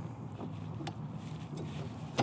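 Faint clicks of the Can-Am Ryker's adjustable foot brake pedal being handled and fitted back into its mount, over a low steady background hum.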